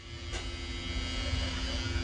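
A steady low buzzing hum with a rumble underneath, starting about a third of a second in.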